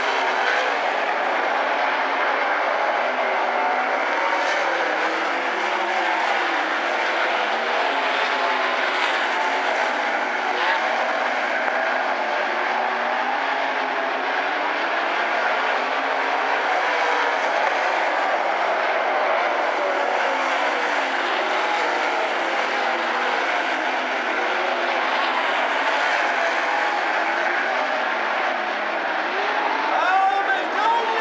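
Several 360 sprint cars' V8 engines running together on a dirt oval, a dense, steady blend of overlapping engine notes that keep rising and falling in pitch.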